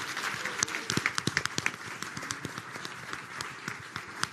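Audience applauding in a large hall, with many sharp claps that are densest in the first two seconds and then thin out.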